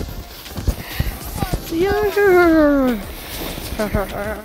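A girl's long drawn-out cry, about a second long, sliding steadily down in pitch, after a few scattered knocks and bumps on the microphone.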